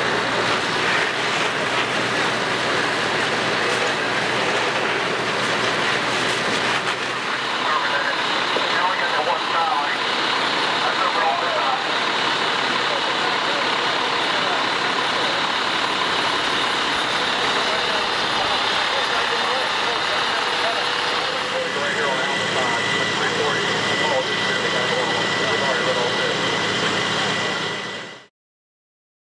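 Fire apparatus engines and pumps running steadily under the rush of hose streams, with indistinct voices mixed in; the sound fades out at the very end.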